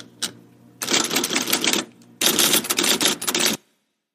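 Manual typewriter typing: a single key strike, then two quick runs of rapid keystrokes, each a second or so long, stopping suddenly.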